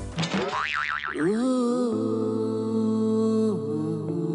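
Background music score: a wobbling, warbling sound effect slides up about half a second in, then gives way to held notes over a steady low drone.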